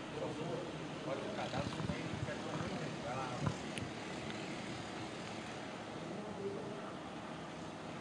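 Faint racing kart engines in the distance under a steady low hiss.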